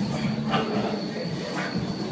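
A set on a plate-loaded leg press: a steady low hum with a thin high whine under it, and two brief rushes of noise, about half a second and a second and a half in, as the sled moves or the lifter breathes out hard.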